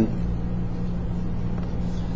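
Steady low background hum with no sharp clicks or knocks; the paper folding is not distinctly heard.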